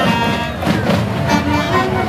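Marching band playing a tune on the move, with flutes, saxophones and violins among the instruments.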